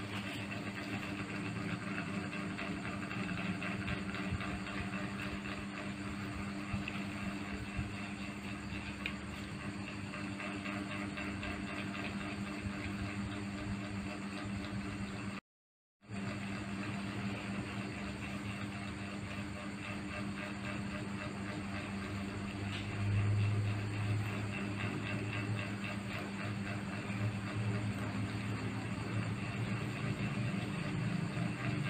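Steady mechanical hum with a constant hiss, like a running motor, briefly cut to silence about halfway through, with a short low rumble swelling a little after two-thirds of the way in.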